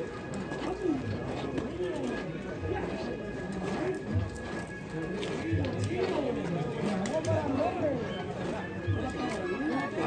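Indistinct voices talking in the background throughout, with a faint steady high tone underneath.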